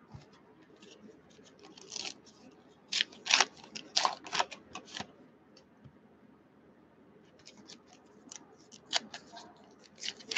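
Baseball cards and foil-wrapped card packs being handled on a desk: a run of short crackling, rustling clicks in two clusters, the first about two to five seconds in and the second near the end as a pack wrapper is pulled open.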